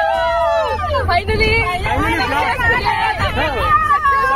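Several people singing and shouting together at once, with long drawn-out calls, over the low rumble of the moving vehicle they are packed into.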